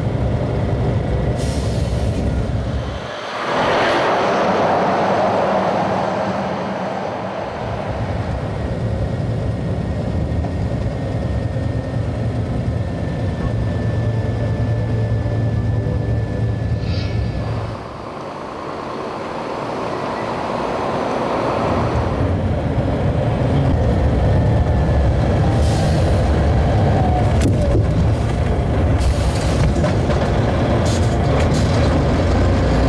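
Scania truck's diesel engine and road noise heard from inside the cab, a steady low rumble as the truck slows and rolls through town traffic. A hiss rises a few seconds in, and the sound dips briefly twice.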